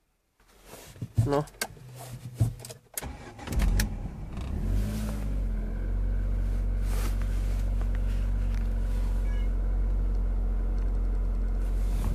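A few sharp clicks, then a car engine starts about three and a half seconds in, rises briefly and settles into a steady idle.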